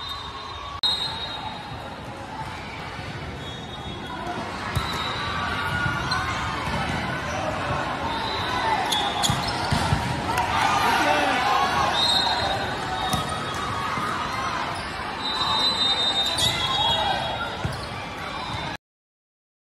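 Indoor volleyball play: the ball being struck and bouncing, short sneaker squeaks on the court, and spectators talking and calling out in a large, reverberant hall. The voices swell louder about ten seconds in.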